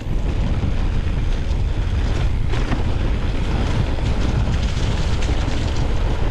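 Wind buffeting the microphone of a handlebar- or body-mounted camera on a mountain bike moving at speed. Under it, the tyres roll over dirt and dry leaf litter, with small rattles and clicks from the bike.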